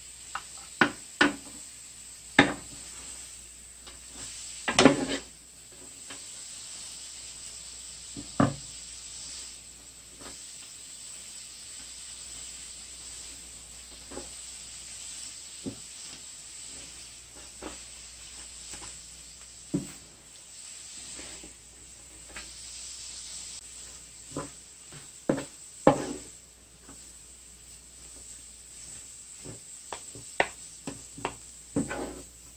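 Fresh spindle tree leaves sizzling and hissing with steam in a hot electric skillet as they are tossed with two wooden spatulas, with irregular sharp knocks of the wood against the pan. It is the first stage of pan-roasting the leaves for tea, when the steam comes off them.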